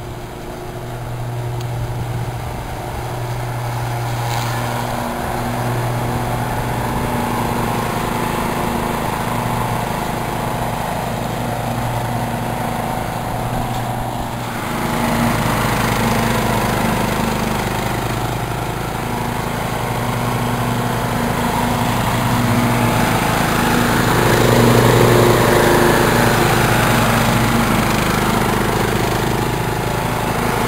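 Briggs & Stratton engine of a remote-controlled rubber-tracked mower running steadily while the machine drives down a dirt slope. It grows louder as the mower approaches, with a step up about halfway through and the loudest part a few seconds before the end.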